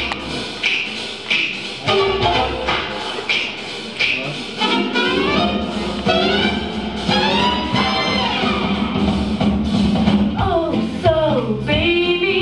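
Jazz-style stage-show music with brass and a steady beat, playing for a dance routine.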